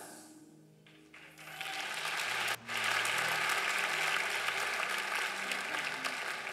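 Congregation applauding, starting about a second in and building, over soft held chords of background music.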